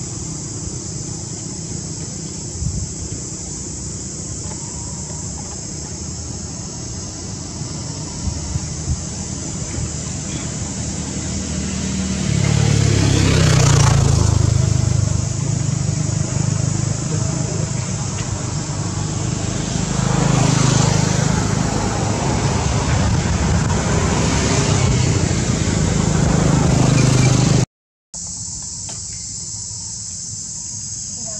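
Steady high-pitched insect drone from the trees, with a low rumble of passing motor vehicles that builds about twelve seconds in and swells twice. The sound cuts out for a moment near the end.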